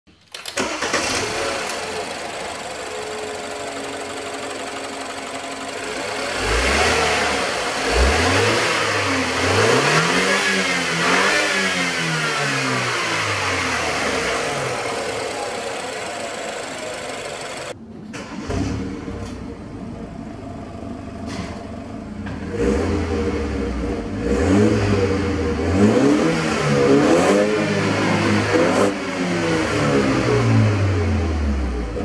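BMW 520i F10's 2.0-litre TwinPower Turbo four-cylinder engine starting, settling into a steady idle, then being revved several times, its pitch rising and falling. After a sudden cut about eighteen seconds in, it is revved repeatedly again.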